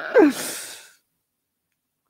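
A man's breathy laughing sigh, falling in pitch and ending about a second in.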